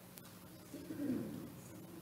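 A brief, faint low voice-like sound about a second in, over quiet room tone.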